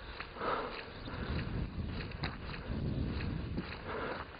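A person breathing audibly close to the microphone, one breath about half a second in and another near the end, over low rumbling handling noise from a moving handheld camera.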